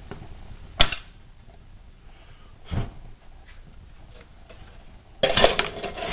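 Metal clinks and knocks at a camp stove: one sharp clink about a second in, another near three seconds, then a quick run of clattering near the end as a metal can is set down over the burning fuel canister to smother the flame.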